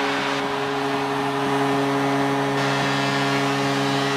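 Hockey arena goal horn sounding one long, steady low blast over a cheering crowd, signalling a home-team goal.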